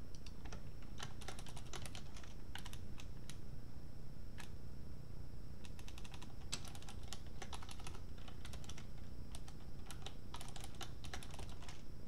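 Computer keyboard typing: quick runs of keystrokes with short pauses between them.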